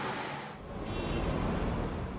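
City street ambience: a steady wash of traffic and crowd noise. The sound changes abruptly about half a second in, with more low rumble after.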